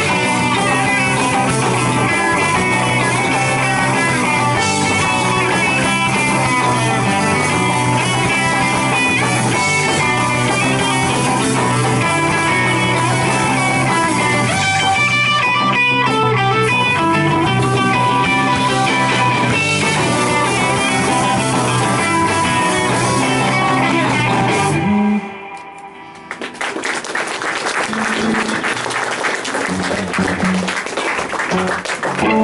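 Live rock band playing through amplifiers: electric guitars, electric bass and drum kit. About 25 seconds in the music stops suddenly for about a second, then the band comes back in.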